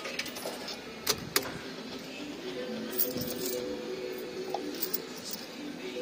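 Amusement arcade background of fruit machines, with steady electronic notes coming in about two and a half seconds in. A few sharp clicks and jangles sound through it.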